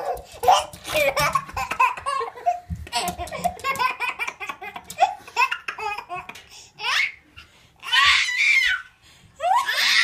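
A baby laughing over and over in short bursts, with louder laughs about eight seconds in and again at the end.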